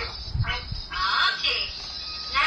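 A high-pitched voice in short bursts, speaking or calling out.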